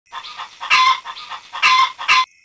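Animal calls in two rounds, each a few short calls building to a louder, drawn-out one.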